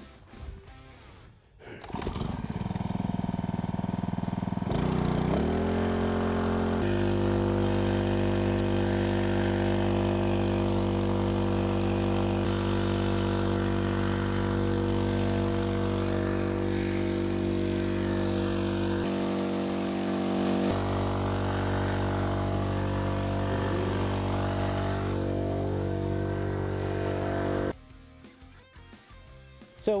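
Small four-stroke engine of a portable mini striker fire pump starting about two seconds in, revving up and then running steadily at high speed while pumping water, cutting off suddenly near the end.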